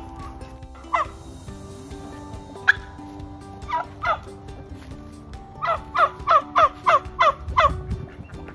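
White domestic turkey calling: a few scattered calls, then a quick run of about seven, roughly three a second, near the end.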